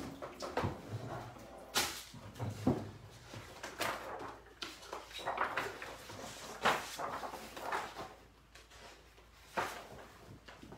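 Irregular handling noises, scattered knocks, clicks and short rustles, as sheets of paper are fetched and handled.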